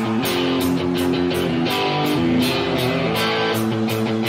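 Rock music: guitar chords over a steady drum beat with cymbal hits about three to four times a second.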